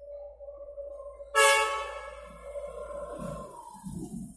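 Train horn sounding: a softer note at first, then a loud, many-toned blast about a second and a half in that holds and fades, its pitch sagging slightly near the end.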